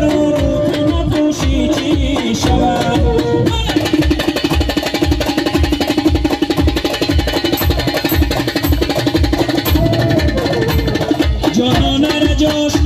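Live instrumental folk music with no singing: an electronic keyboard over a steady programmed drum beat, and a transverse flute playing the melody.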